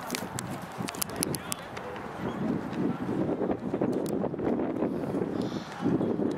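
Indistinct voices of people close to the microphone at an outdoor football ground, with a few sharp clicks in the first second and a half.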